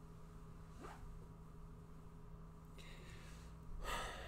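Quiet room with a steady low hum; just before the end, a short, sharp breath in.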